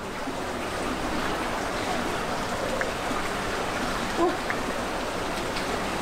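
Steady rushing of a fast-flowing river, the Aare, its current running past the bank.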